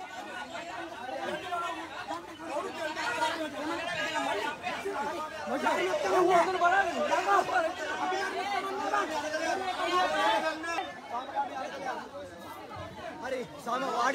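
A crowd of people talking over one another, many voices at once.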